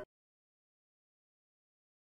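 Digital silence: the recording cuts off abruptly at the very start, and nothing follows.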